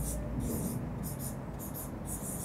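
Marker pen writing on a whiteboard: a run of short, soft hissing strokes as the letters of a word go down.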